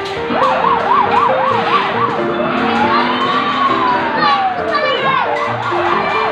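Electronic siren sound effect from a play fire truck's control panel: a fast up-and-down yelp, then one slow rise and fall, then the fast yelp again. Background music with a steady beat plays under it.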